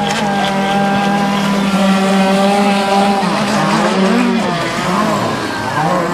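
Radio-controlled model speedboat engine running at speed: a steady, high engine note for about three seconds, then the pitch wavers, dipping and rising as the boat turns and the throttle changes.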